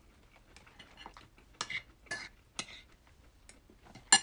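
Eating sounds of crab and shrimp picked apart by hand on a plate: about half a dozen short, quiet clicks and crackles spread over a few seconds.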